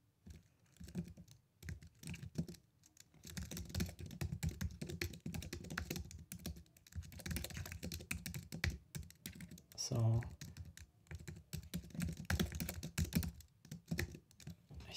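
Typing on a computer keyboard: quick, uneven runs of keystrokes with short pauses between them.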